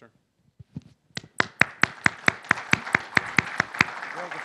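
Audience applause building from about a second in, with one nearby pair of hands clapping loud and evenly, about four or five claps a second, over the wider crowd.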